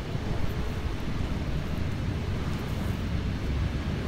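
Wind buffeting the microphone outdoors: a low, uneven rumble with no other clear sound.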